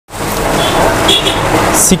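Busy street noise: a steady din of traffic with a low engine hum and a babble of background voices. A brief high tone sounds twice, and a voice starts right at the end.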